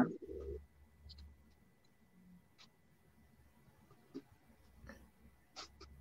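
Near silence with a few faint, scattered clicks and taps from hands handling a flashlight and a tablet case.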